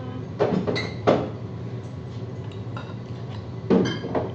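Dishes and cutlery clinking at a table: a few sharp clinks in the first second or so, one with a short ring, then another near the end, over a steady low room hum.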